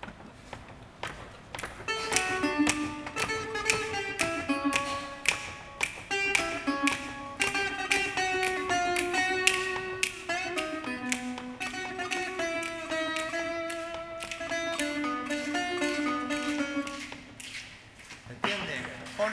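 Lap-style resonator guitar played with a slide bar, picking out a solo instrumental melody of single plucked notes, some gliding between pitches.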